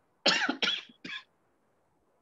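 A woman coughing: two quick coughs and a shorter third one within about a second.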